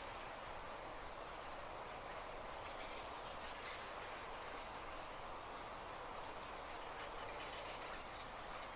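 Faint, steady open-air countryside ambience with a few faint, distant bird calls.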